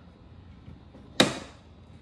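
A single sharp plastic click about a second in, from the LED side marker light and its socket being pushed into place in the car's rear body panel.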